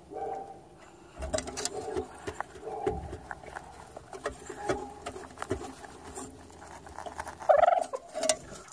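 Domestic chickens clucking in short, repeated calls, with a louder call shortly before the end.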